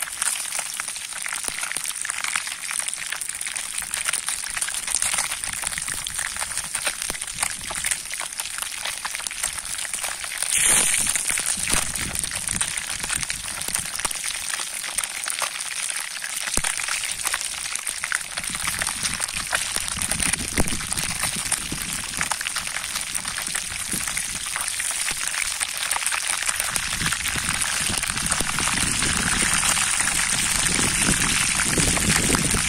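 Fish pieces deep-frying in hot oil in an iron pan over a wood fire: a steady, dense sizzle full of fine crackles. A brief louder rush comes about ten seconds in, and low rumbles come and go in the second half.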